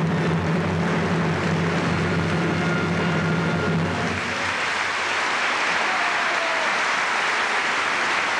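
Theatre audience applauding, with a low held note from the orchestra under it that stops about four seconds in, leaving the applause alone.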